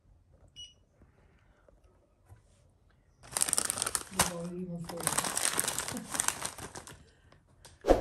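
A faint short beep, then, about three seconds in, some four seconds of loud crinkling, crackling noise, joined briefly by a short voiced sound.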